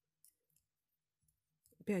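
Near silence broken by a few faint, short clicks; a woman's voice begins near the end.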